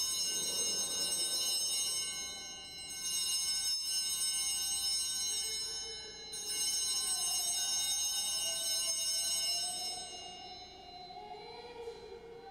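Altar bells, a cluster of small sanctus bells, shaken three times about three seconds apart, each ring fading away. They mark the elevation of the consecrated host.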